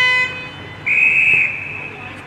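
A horn's steady tone cuts off just after the start, then a single short, high whistle blast sounds about a second in, typical of an umpire's whistle.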